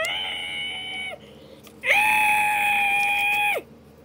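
A high-pitched voice holding two long, steady screams: the first breaks off about a second in, and the second, higher one starts just before the two-second mark, lasts nearly two seconds and ends with a quick drop in pitch.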